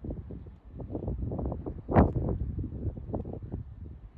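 Wind buffeting the microphone in uneven low rumbles, with one louder gust about halfway through.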